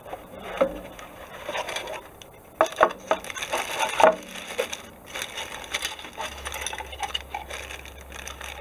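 A clear plastic bag crinkling and rustling as the bagged plastic sprues of a model kit are handled, with irregular sharper clicks and rattles of the plastic parts, the loudest about two and a half seconds and four seconds in.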